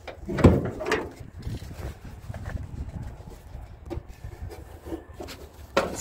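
Clunks, scrapes and rubbing as the hood of a 1985 Dodge Caravan is unlatched and lifted by hand. The loudest knock comes about half a second in, with fainter clicks and rubs after it.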